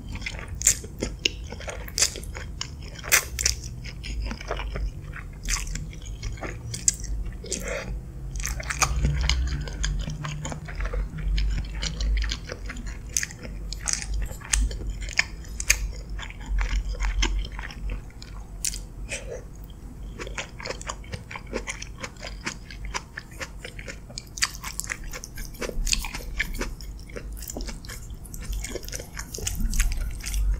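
Close-miked chewing and wet mouth sounds of a person eating spaghetti in a creamy sauce, with many sharp little clicks throughout.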